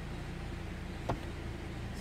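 2004 Honda Accord's engine idling steadily, heard from inside the cabin, running on its newly replaced ECU with the matched key accepted by the immobilizer. A single short click about a second in.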